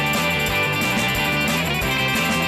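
Rock band playing an instrumental passage: electric guitar strumming over bass and drums with a steady beat.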